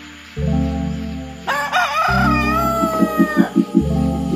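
A rooster crowing once, a single cock-a-doodle-doo of about two seconds starting about a second and a half in, its long final note slowly falling. Electronic music with deep bass notes plays underneath.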